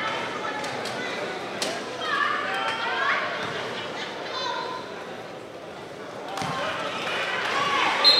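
A basketball bounced on a hardwood gym floor as a player sets up and takes a free throw, with a few sharp knocks. Crowd voices and chatter echo through the large gym.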